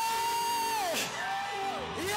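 Live praise-and-worship music: a melody of two long held notes, each sliding down at its end.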